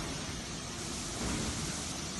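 Steady rushing background noise of a factory hall, an even hiss with no distinct machine rhythm or tone.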